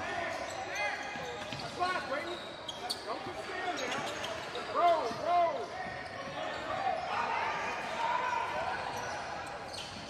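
Live sound of a basketball game in a large gym: sneakers squeaking in short chirps on the hardwood court, loudest twice in quick succession about five seconds in, over the voices of players and spectators.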